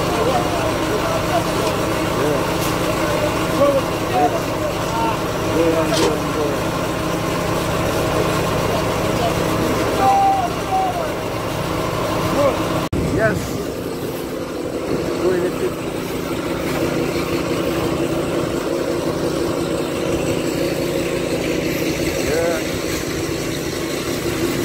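Small petrol engine of a concrete curb-extruding machine running steadily under load as the machine lays curb, with voices in the background. About halfway through, the sound cuts and the engine's deep tone drops away, leaving a fainter, steady hum.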